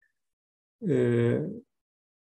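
A man's voice making one drawn-out hesitation sound, "eh", about a second in and lasting under a second, with silence around it.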